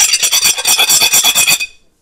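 A knife rubbed rapidly back and forth across the gold-decorated rim of a ceramic dinner plate, about eight scraping strokes a second, stopping suddenly near the end. It is a scratch test of the gold finish.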